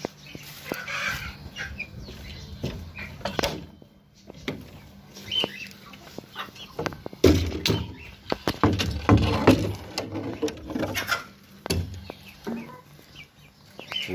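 Chickens clucking in a farmyard, among scattered knocks and rustles. The clucking and knocking are busiest about halfway through.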